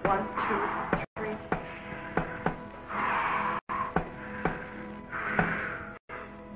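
Film soundtrack: sustained eerie music under three hissing bursts of breath, about two and a half seconds apart, the invisible phantom breathing from its air tank. Scattered sharp taps come in between.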